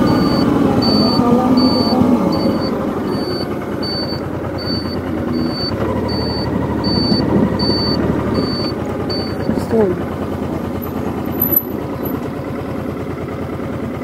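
A Honda Deauville's V-twin engine runs under way, with wind rush, as the motorcycle rides a winding road. A high electronic beep repeats about three times a second and stops about nine seconds in.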